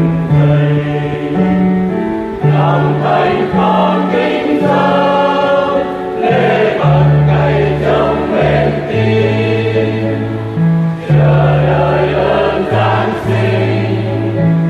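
Church choir singing a Vietnamese Catholic hymn over held low accompaniment notes that change about every second.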